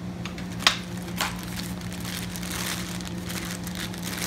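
Clear plastic parts bag crinkling as it is handled, with a sharp click about half a second in as metal hardware is knocked or set down.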